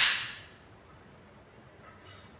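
A single sharp crack right at the start, dying away within about half a second, then quiet room tone.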